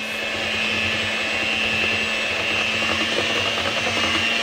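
Electric hand mixer running at a steady speed, its beaters whisking cake batter in a plastic bowl: an even whir with a constant hum.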